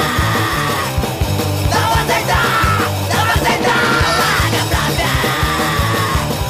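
Studio recording of a hardcore punk song: distorted guitar, bass and pounding drums under yelled vocals.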